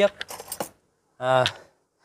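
A quick cluster of light metallic clinks and rattles, small metal parts being handled, in the first half-second, followed by a short spoken 'uh'.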